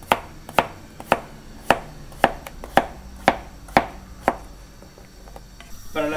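Kitchen knife slicing raw potato into half-moon slices on a plastic cutting board. Nine sharp knocks of the blade on the board, about two a second, stop a little past four seconds in.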